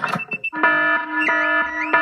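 Cartoon house burglar alarm going off: a few short high beeps, then about half a second in a loud, steady electronic alarm tone begins, wavering in pitch roughly twice a second.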